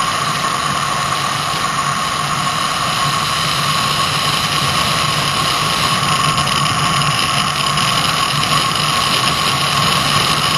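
Unpowered gravity racer coasting downhill at speed: a steady rush of wind on the onboard microphone with the wheels rolling on asphalt, and a thin steady whine running through it.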